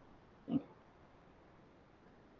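A single short grunt from a man, about half a second in, against quiet room tone.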